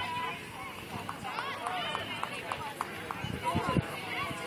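A crowd of people talking at once, many overlapping voices with no single clear speaker. There are a few short sharp knocks, the loudest near the end.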